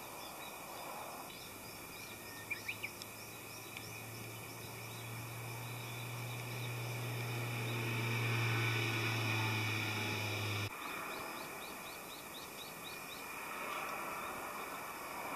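A large flying insect's wings buzzing as a low steady hum that grows louder as it hovers at the loquat fruit, then cuts off abruptly about two-thirds of the way through. Birds chirp in quick high series in the background at the start and end.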